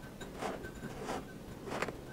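Kinetic sand crunching as it is worked by hand or tool: three short scratchy strokes about two-thirds of a second apart, the last one sharpest.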